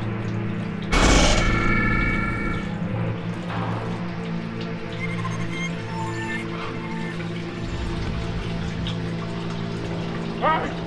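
Background film score of steady sustained tones, with water splashing in a bathroom sink as a face is washed. A loud rushing burst comes about a second in and fades over the next two seconds.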